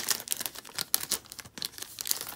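Clear plastic card sleeve crinkling as photocards are slid out of it by hand: an irregular run of sharp crackles, loudest right at the start.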